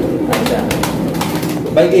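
Several pigeons cooing together in a small room, a steady low murmur, with a few sharp clicks.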